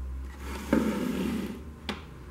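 Handling noise from the opened plastic case of a voltage stabilizer: a stretch of rubbing and scraping in the middle, then a single sharp knock near the end, over a steady low hum.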